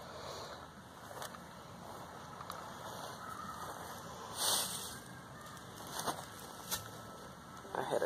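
Light handling noise close to the microphone: a few sharp clicks and one brief rustle near the middle, over a faint steady outdoor background.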